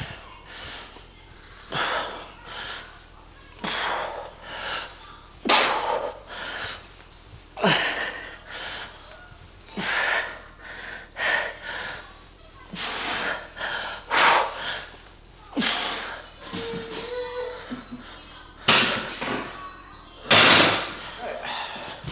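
Hard breathing through a set of barbell back squats: a forceful breath in and out about every two seconds, one pair per rep. There is a short groan about three quarters of the way through.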